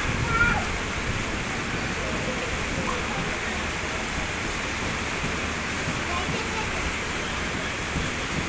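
LHB passenger coaches of a departing express rolling past at low speed, a steady even noise of wheels running on the rails.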